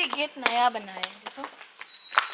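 A woman's voice, a brief utterance in the first second and a half, falling in pitch, then faint footsteps on a paved path.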